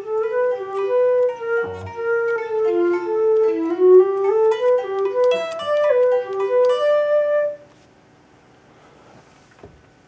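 ThumbJam's sampled instrument on an iPad playing a melody of single sustained notes, one after another, triggered live from an electric guitar through the app's note recognition. The melody stops with about two seconds left.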